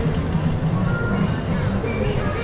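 Busy city street sound: music playing over a steady low rumble of traffic, with a few short tones.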